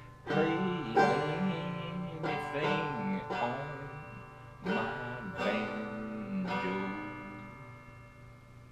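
Banjo strummed in chords, about half a dozen strokes a second or so apart, the last chord ringing and fading out near the end as the song closes.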